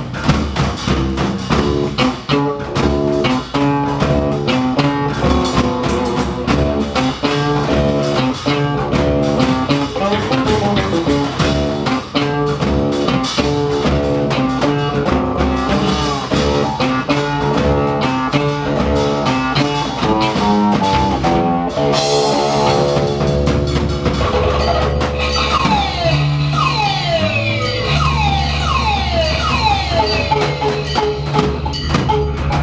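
Live instrumental band music: plucked hybrid stringed instrument and fretless electric bass over hand-drum percussion, playing quick runs of notes. About twenty-two seconds in, the texture changes to many sliding, swooping pitches.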